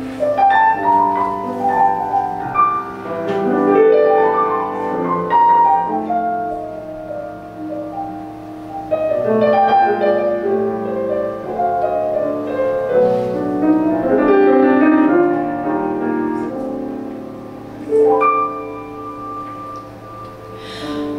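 Grand piano playing a slow, chordal ballad introduction, with rolling runs of notes and swelling chords, before the vocal comes in.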